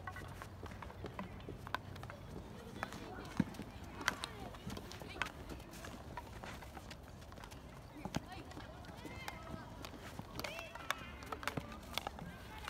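Field hockey sticks tapping and striking balls on artificial turf: irregular sharp clicks a second or more apart, with running footsteps and background voices of players, the voices more noticeable near the end.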